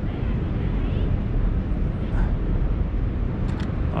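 Outdoor city ambience: a steady low rumble with a light hiss over it, and a couple of brief clicks about three and a half seconds in.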